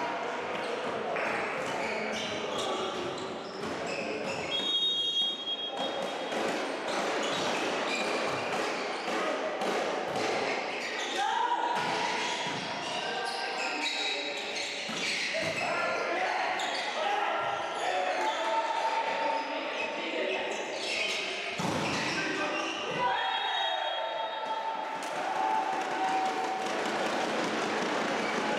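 Indoor volleyball play in an echoing sports hall: a volleyball being struck and bounced again and again, short squeaks of shoes on the court, and players calling out.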